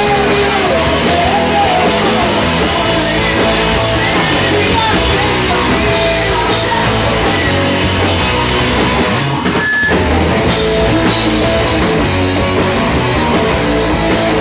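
Live rock band playing loudly: drum kit, electric bass and guitar, with a sustained melodic line on top. The band drops out for a split second about ten seconds in, then comes straight back.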